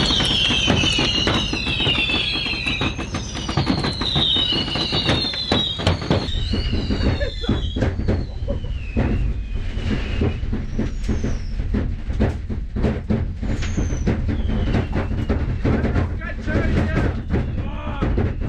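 Fireworks going off inside a bus cabin: shrill whistling fireworks for the first few seconds, with a few shorter whistles later, over a dense run of crackles and pops. The bus engine drones steadily underneath.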